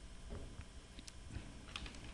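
Faint rustling and light crackling clicks of paper handout sheets being handled and turned, getting busier in the second half, with a few soft low thumps.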